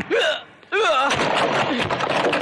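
Movie fight sound effects: a man's two short pained yells in the first second, each with a sharp hit. In the second half comes a loud, dense run of punch impacts.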